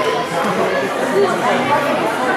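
Crowd chatter in an indoor sports hall: many people talking at once, with no single voice standing out.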